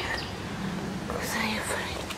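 A person's whispered voice, briefly, about a second in, over a low steady outdoor background.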